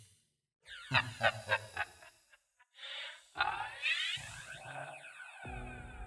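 Deep, scratchy, distorted voice laughing: a run of quick 'ha' pulses about a second in, then a longer laugh that rises and falls in pitch. A low, steady music drone comes in near the end.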